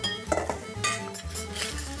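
A spoon scraping and clinking against a stainless steel mixing bowl as ricotta is scooped out, in a few short strokes.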